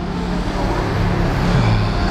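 Road traffic: a motor vehicle's engine hum with steady road noise.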